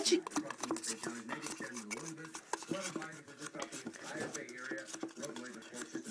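Faint background speech, too low to make out, with soft clicks and handling noise close by.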